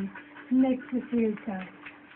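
A collie-type dog vocalizing: four short pitched calls in quick succession, starting about half a second in, in the dog's chattering, talking-back manner.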